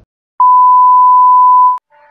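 A single loud, steady electronic bleep, one pure unwavering tone of the kind used as a censor bleep, starting about half a second in and cutting off sharply after about a second and a half, with dead silence either side.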